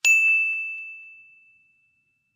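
A single bright ding, a bell-like chime at one high pitch that is struck once and dies away over about a second and a half. It is a sound effect on an animated logo card.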